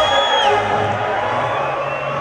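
Live band music through a stage PA: a held note ends about half a second in, then a steady low tone carries on under crowd noise.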